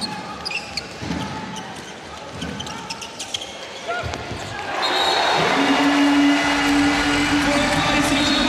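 Indoor handball play: the ball bounces on the court and shoes squeak. About five seconds in, the home crowd breaks into a loud cheer for a goal, and a long, steady goal horn sounds over it.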